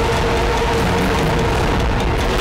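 Dramatic TV-serial background score: a steady held note over a low drone with a noisy, hissing texture.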